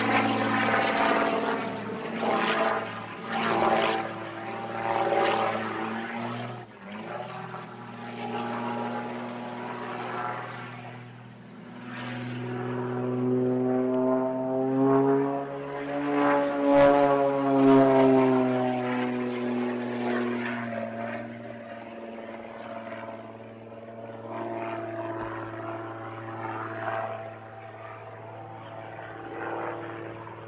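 Extra 330 aerobatic plane's six-cylinder propeller engine droning through aerobatic manoeuvres. Its loudness swells and fades in the first few seconds, then its pitch climbs to a peak about halfway, the loudest point, and falls away into a quieter steady drone.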